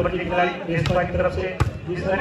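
A volleyball struck by hand during a rally: two sharp smacks about three quarters of a second apart, the second the sharper, under a man talking.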